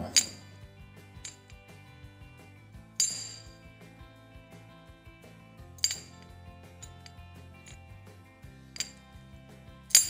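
Sharp metallic clinks from a scooter variator as its ramp plate is slid up and down in the housing on its slider guides, knocking at the ends of travel; about five clinks a few seconds apart. The plate moves freely without jamming. Faint background music runs underneath.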